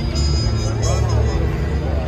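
Chatter from a crowd of people on foot, over a steady low rumble.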